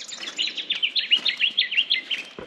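A small bird singing a rapid run of short, sharp repeated notes, about six a second.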